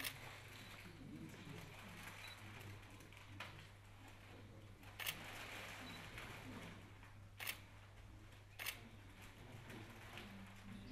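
Camera shutters clicking in single shots at irregular intervals, about five clicks over ten seconds, over a low steady hum.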